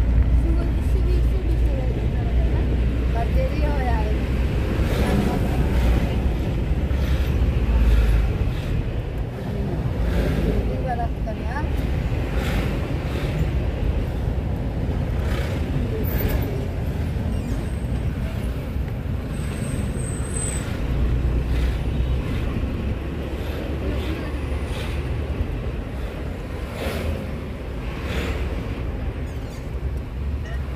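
Engine and road noise heard from inside a moving car: a steady low rumble with scattered knocks and bumps.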